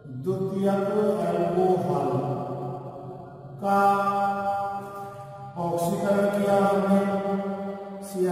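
A voice chanting, holding long steady notes in three phrases of a few seconds each.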